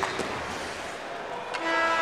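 Arena crowd noise, then about one and a half seconds in the arena's end-of-game horn starts, a steady held tone as the clock runs out.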